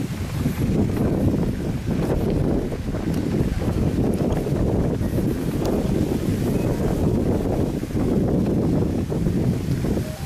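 Wind buffeting the microphone of a camera carried on a moving bicycle: a steady low rumble.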